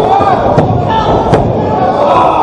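Two sharp impacts on a wrestling ring, about half a second in and again about a second and a half in, as a wrestler's body hits the mat and his opponent.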